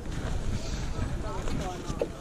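Wind buffeting the microphone as a low, steady rumble, with faint voices of people talking in the background.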